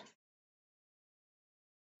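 Near silence: the audio drops out completely, a dead gap with no sound.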